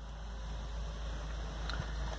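Steady low rumble and hiss of background noise inside a car cabin, with a faint knock near the end.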